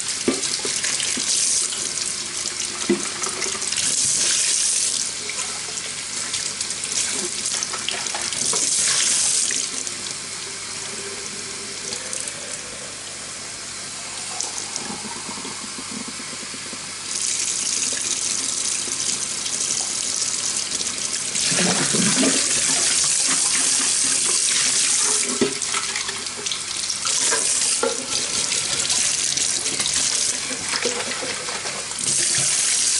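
Tap water running into a stainless steel sink as a glass coffee-maker carafe is rinsed and filled under it, with water pouring back out of the glass. The flow comes in two short louder spells early on, eases off for a few seconds, then runs strongly through the second half, with an occasional light knock of the glass.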